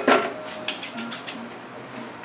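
Light clicks and crinkles of hands working Oreo crumbs in a thin disposable aluminium foil pan: a quick run of sharp ticks in the first second, then quieter handling.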